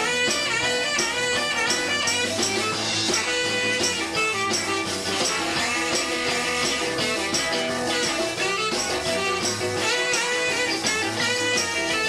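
Live blues band playing, with a saxophone carrying the melody over electric guitar and a steady beat.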